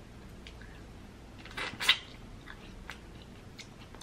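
Close-miked chewing of rambutan flesh: soft wet mouth clicks, with a louder wet smack a little under two seconds in.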